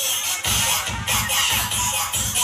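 Live band music with an electronic keyboard, played loud through PA loudspeakers. A heavy, steady beat kicks in about half a second in.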